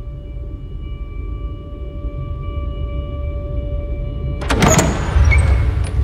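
Low, dark film-score drone of steady held tones over a rumbling bass that slowly grows louder. About four and a half seconds in comes a sudden burst of clattering noise, a heavy wooden double door being opened, over a deep swell in the score.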